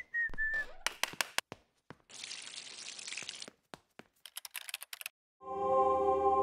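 Sound effects for an animated logo intro: a short falling whistle, a quick run of clicks, a hiss lasting about a second and a half, another burst of rapid clicks, then a sustained ambient synth chord starts near the end.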